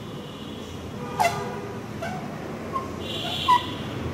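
Whiteboard marker squeaking and scratching against the board as digits are written: four short squeaks about a second apart, the loudest near the end.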